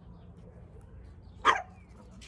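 A dog barks once, briefly, about one and a half seconds in, over a faint steady background.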